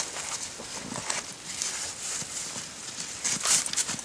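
Spruce boughs rustling and crackling and alder sticks knocking as a homemade snowshoe frame is handled, with a run of sharper clicks near the end.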